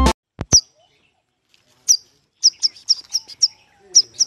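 A young owl's high, shrill chirps: short falling notes repeated in a quick, uneven series of several a second, starting about two seconds in.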